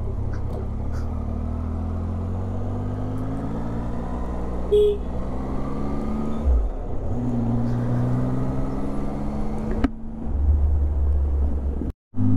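Motorcycle engine running under way at low city speed, its note rising and falling as the rider accelerates and shifts, with road and wind noise underneath. Near the end the sound jumps abruptly to a different stretch of riding.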